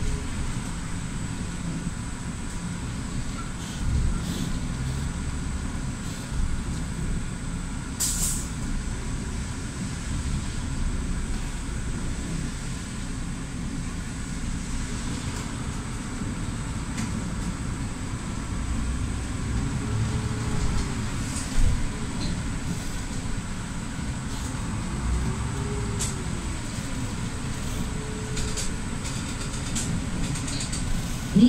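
Inside a city bus under way: a steady low engine and road rumble, with a few short knocks and faint tones that rise and fall in the second half.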